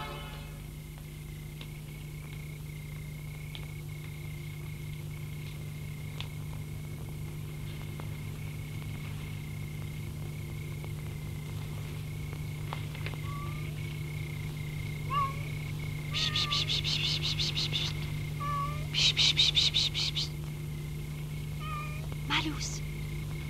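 A cat meowing faintly, a few short calls in the second half, over a steady low soundtrack hum. Two bursts of rapid high trilling near the end are the loudest sounds.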